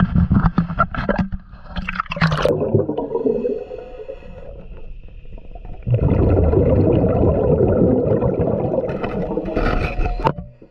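Knocks and handling clatter, then about six seconds in a sudden, loud, steady underwater scraping as a hand scraper works barnacles off a boat's propeller.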